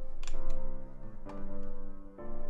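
FL Keys software piano in FL Studio playing back a chord progression over low bass notes, with new chords struck about a third of a second in and again a little past one second.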